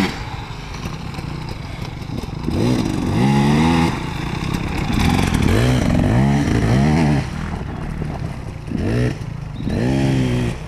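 Dirt bike engine revving up in a series of rising pulls, each dropping back as the throttle closes, with loudness swelling and easing as the bike rides around.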